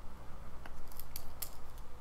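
About five light, sharp clicks and taps in quick succession in the second half, over a faint steady hum: a stylus tapping on a pen tablet while erasing handwritten ink and switching tools.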